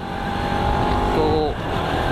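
Bajaj Pulsar RS200's single-cylinder engine running steadily under way, heard from the rider's helmet mic with heavy wind rumble over it.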